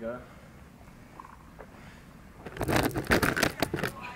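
Loud crackling, rustling handling noise close to the microphone, lasting about a second and a half in the second half.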